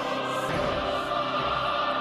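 Instrumental music from the intro of a UK rap track: held, choir-like chords with no vocals.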